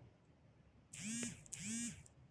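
A woman's voice making two short wordless vocal sounds back to back, about a second in. Each lasts about half a second and rises, then falls, in pitch.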